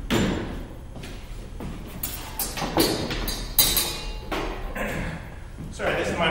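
A wooden training spear and a sword being handled at a table: a run of irregular knocks and clatters, the sharpest about three and a half seconds in, with footsteps on a hard floor.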